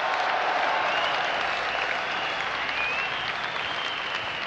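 Lecture-hall audience applauding steadily, loudest in the first second or two and tapering slightly toward the end.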